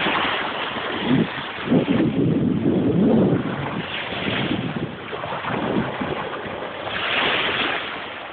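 Small waves breaking and washing up the shore, with wind buffeting the microphone in heavy gusts during the first few seconds.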